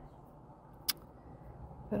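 Faint steady rumble of street traffic heard from inside a car, with a single sharp click about a second in.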